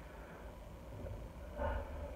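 Quiet room tone with a steady low hum, and a short spoken word near the end.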